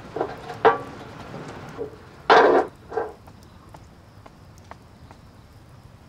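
Wooden bathroom sign handled against a wall: a few short knocks and scrapes in the first three seconds, the loudest about two and a half seconds in. Then faint scattered ticks.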